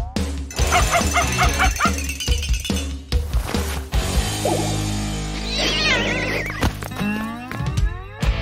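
Cartoon background music with animal sound effects over it: a cat's hiss at the start, then dog and cat yowls and whimpers, and a rising glide near the end.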